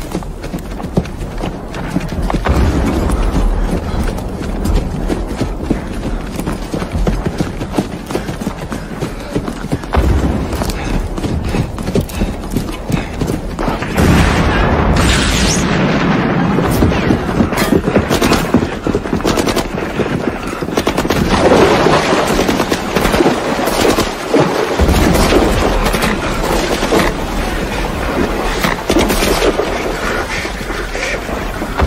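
Battle sound effects: rapid rifle and machine-gun fire crackling throughout, with heavy explosions. The loudest blast comes about fourteen seconds in.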